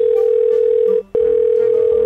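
A loud, steady electronic tone at one pitch, briefly broken off about a second in and then resuming.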